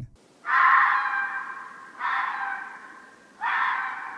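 Red fox calling: three harsh screams about a second and a half apart, each loud at the start and trailing off. It sounds like someone in pain.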